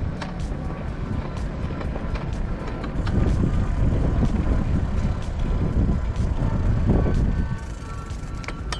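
Wind rumbling on the microphone of a camera riding on a moving mountain bike, with scattered clicks and rattles from the bike. It grows louder from about three seconds in and drops near the end. Background music plays underneath.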